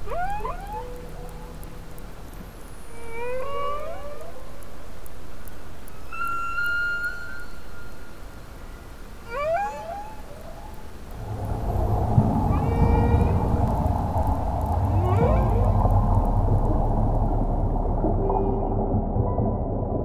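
Humpback whale song: a series of rising whoops and sliding moans every two to three seconds. About halfway through, a louder, dense low sound bed comes in under the calls.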